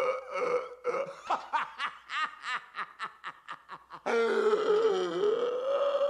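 A man laughing hysterically and uncontrollably: rapid, evenly repeated bursts of laughter, about four or five a second, that about four seconds in turn into a louder, long, wailing drawn-out laugh.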